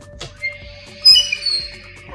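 Logo-sting music with sound effects: a short swoosh just after the start, then a bright, high sparkling shimmer about a second in, the loudest part, which fades away.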